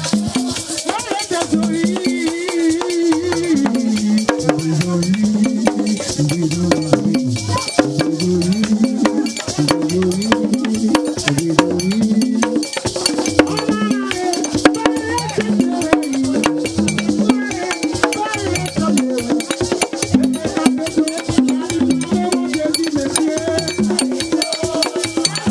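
Haitian Vodou hand drums with cord-tied skin heads played by hand in a dense, continuous ceremonial rhythm, with voices singing a chant over them.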